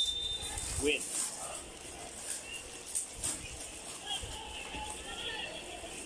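Thin plastic bag wrapping crinkling and rustling in short crackles as it is pulled open by hand. A sports commentator's voice says one word at the start, and faint voices continue in the background.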